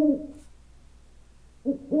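Owl hooting in low, rounded hoots. One hoot is dying away at the start, then a short hoot is followed by a longer one near the end.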